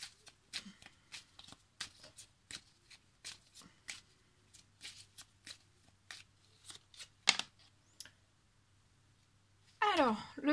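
A deck of oracle cards being shuffled by hand: irregular light clicks and flicks of card against card, a few a second, with one louder snap about seven seconds in. The shuffling stops about eight seconds in.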